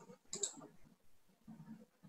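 A single sharp click of a computer mouse button about half a second in, amid faint low room sounds.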